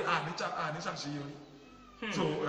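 A man's voice speaking, drawn out and bending in pitch, trailing off about a second and a half in.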